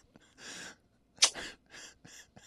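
Breathy, nearly voiceless laughter: a run of short exhaled bursts of air, the sharpest a little past a second in.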